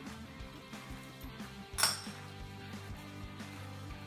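Knife and fork clinking on a plate, with one sharp clink a little before halfway, over quiet background music.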